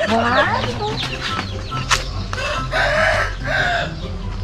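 A rooster crowing, a harsh call in two parts near the end, with a sharp click about two seconds in.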